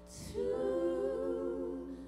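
Vocal ensemble singing a cappella in close harmony. After a short lull the voices come in about half a second in on a held chord, the top voice wavering, and fade just before the end.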